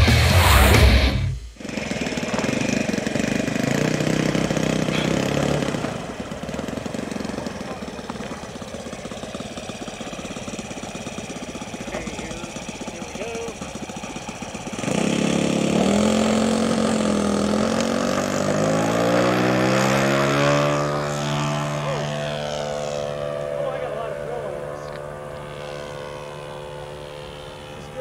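Saito 1.00 four-stroke glow engine of an RC model P-40 running as the plane taxis, opening up to full throttle about 15 s in for the takeoff run, its pitch bending and then rising as the plane climbs away, and running steadily in flight near the end. Intro music ends suddenly in the first second and a half.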